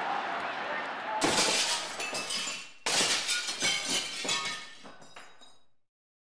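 A steady background murmur, then two loud shattering crashes about a second and a half apart, like glass breaking, each followed by falling pieces clinking and settling; the sound then cuts off.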